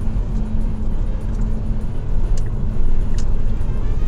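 Steady road and wind noise inside the cabin of a Tesla cruising at motorway speed, mostly a low rumble from the tyres, with no engine sound from the electric car.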